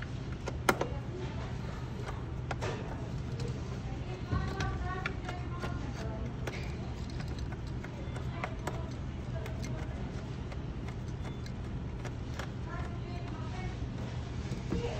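A steady low hum with scattered sharp clicks and clinks, the loudest a single click a little under a second in; faint voices in the background.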